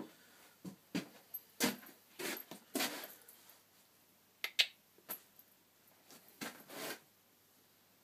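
Handling noise close to the microphone: scattered short knocks, clicks and rustles as a person leans in to the camera and moves about, the sharpest pair about four and a half seconds in, then settling to quiet shop room tone near the end.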